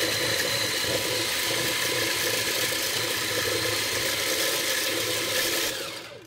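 Faberlic Home immersion blender running steadily with its whisk attachment, beating raw eggs in a plastic beaker. The motor stops near the end.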